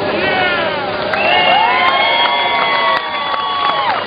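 A crowd of people cheering and whooping, many voices at once. Several long held calls stop together shortly before the end.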